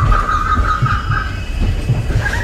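Railroad car wheels clattering in a regular rhythm over the rail joints. A high, wavering wheel squeal sounds through about the first second.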